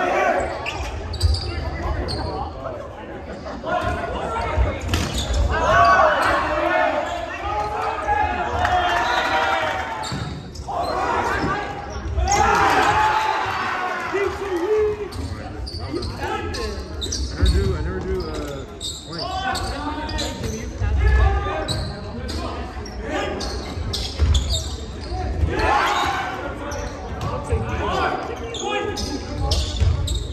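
Volleyball rally in a gymnasium: the ball struck again and again, with players and spectators shouting and cheering at intervals.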